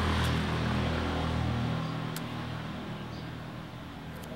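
A passing motor vehicle's low engine hum with road noise, fading away over the first two seconds as it drives off. A faint click comes a little after two seconds in.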